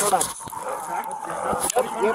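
A police siren starts to wail about halfway through, a thin slowly rising tone, under men's shouted voices. There are a few sharp knocks of clothing rubbing on the body-worn camera.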